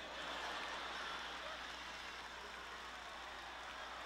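Faint audience reaction from a theatre crowd: a steady haze of applause and crowd noise, a little louder in the first second.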